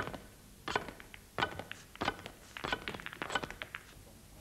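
Snooker cue rapidly striking a row of red balls one after another into a wicker basket: a quick, uneven string of sharp clicks and knocks, about a dozen over three and a half seconds.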